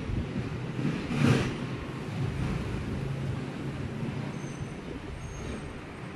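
Low background rumble with a faint steady hum, swelling briefly twice in the first second and a half.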